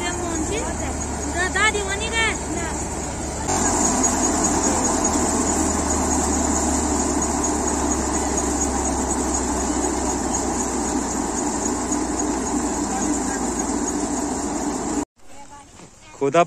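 Tractor-powered wheat thresher running, a steady mechanical din with the tractor engine's low hum beneath it. It cuts off abruptly near the end.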